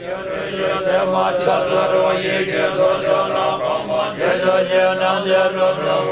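Buddhist monks chanting together in unison, a steady, sustained group chant of many voices.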